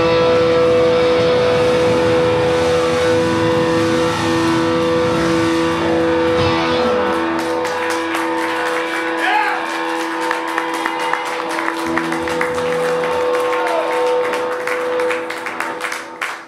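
Electric guitars sustaining held, ringing notes as a live rock song ends, with the low end dropping out about seven seconds in. Audience clapping starts soon after and grows toward the end.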